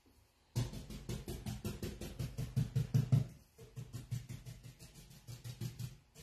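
Paintbrush dabbing against a painted wooden cabinet panel, rapid even taps of about eight a second that start about half a second in and pause briefly about halfway through.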